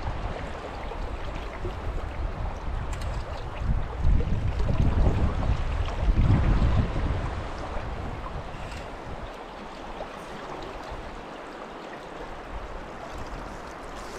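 Wind buffeting the microphone over the steady rush of creek water, gusting hardest in the first half and easing after about seven seconds.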